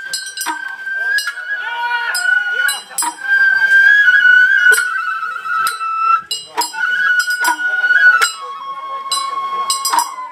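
Sawara-bayashi festival float music: a Japanese bamboo flute holds long, high notes over repeated sharp percussion strikes. The flute drops to a lower held note near the end.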